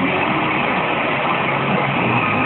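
FM radio receiving a distant station by sporadic-E skip, the rock song it is playing almost lost under a steady hiss of static as the signal fades.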